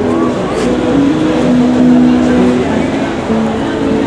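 Live street music: a melody of held notes stepping up and down, over the chatter of a surrounding crowd.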